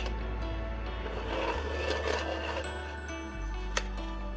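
Aluminium Bialetti moka pot's threaded halves rasping against each other as they are screwed together, with a sharp metal click near the end. Background music plays throughout.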